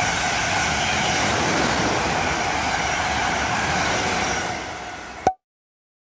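Passenger train running past on the rails, with a steady rolling noise of wheels on track. It fades out over the last second or so and cuts off abruptly about five seconds in.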